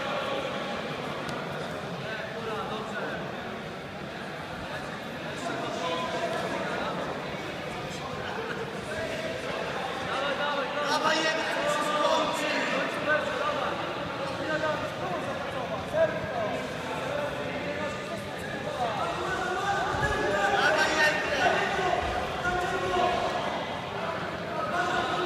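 Indistinct voices of spectators calling out and talking around a grappling mat, echoing in a large sports hall, growing louder about ten seconds in and again near the end.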